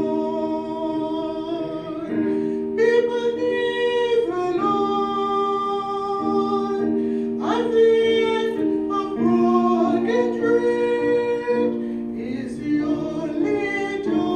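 A woman singing a gospel solo over an instrumental accompaniment. She holds long notes, with one rising slide about halfway through.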